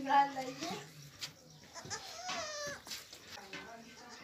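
A baby goat bleats once, a wavering cry of just under a second, about two seconds in.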